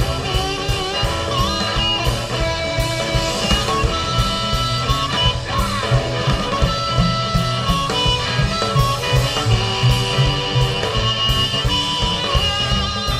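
Live blues band playing an instrumental passage: harmonica over electric guitar, upright bass and drum kit, with a steady beat.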